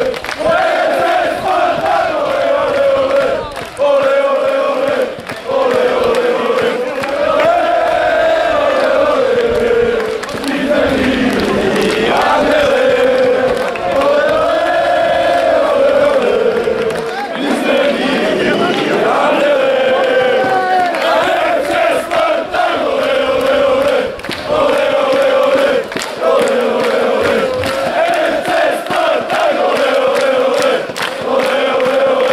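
A crowd of football supporters chanting in unison, a sustained sung melody from many male voices that rises and falls. Rhythmic hand clapping joins in during the second half.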